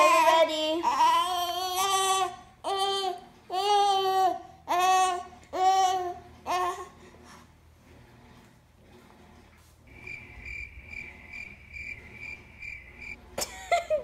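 Baby boy in a high chair vocalizing in a run of about seven loud, drawn-out calls while waiting for his spoonful of food. Later a faint high beeping, about three pulses a second, lasts a few seconds.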